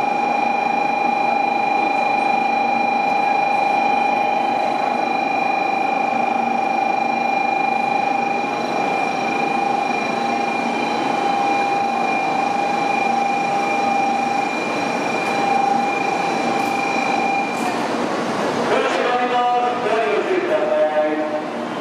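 N700-series Shinkansen train pulling out along the platform: a steady high whine over the rushing noise of the passing cars, dying away about eighteen seconds in.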